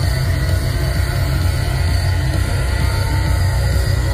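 Loud live heavy rock music through an arena PA, dominated by a steady, heavy bass rumble with no clear vocal line.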